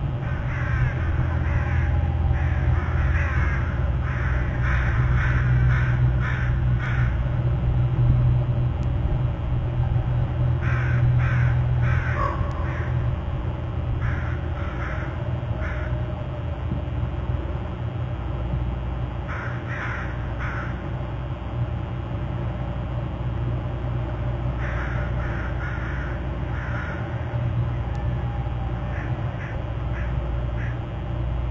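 Repeated bird calls: bursts of several short notes about three a second, recurring every few seconds, over a steady low hum.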